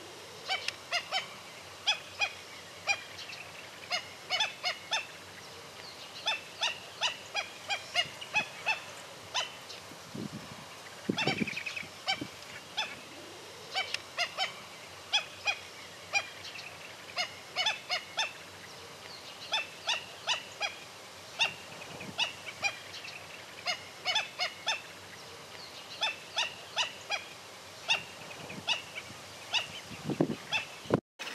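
A flock of black-necked stilts calling: short, sharp, high notes in quick clusters of several, repeated over and over.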